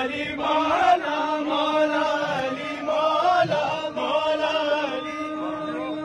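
Men chanting a devotional Urdu manqabat in praise of Ali: a lead male voice on a microphone sings long wavering melodic lines, with other men's voices joining in. A steady low note is held underneath throughout.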